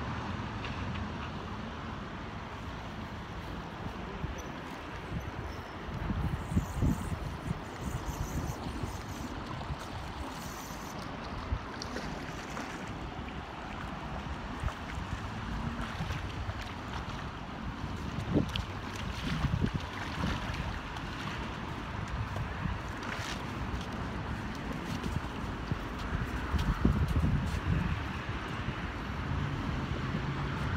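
Steady rush of river water with wind buffeting the microphone in gusts, and road traffic on the bridge overhead.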